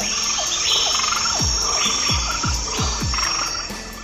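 A dense chorus of frogs and insects with a steady high trill over it, laid over electronic dance music whose regular kick drum keeps going underneath; the chorus fades out near the end.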